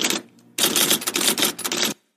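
Rapid, dense clatter of clicks in two runs: the first ends just after the start, and the second begins about half a second in and stops abruptly near the end.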